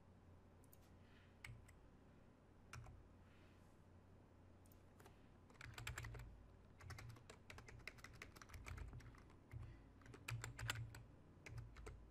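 Faint typing on a computer keyboard. A few isolated key clicks come first, then runs of quick keystrokes from about five and a half seconds in.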